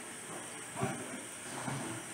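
Steady breathy hiss of air from a man breathing through a tracheostomy tube on a ventilator circuit, with a short strained voice sound about a second in and a fainter one near the end as he attempts speech exercises.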